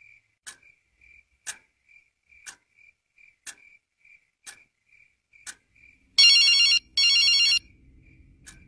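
A clock ticking steadily once a second, with fainter ticks in between. About six seconds in, a telephone rings with two short warbling electronic ring bursts, much louder than the ticking.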